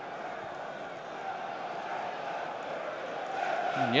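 Football stadium crowd noise: a steady din of many voices filling the stands.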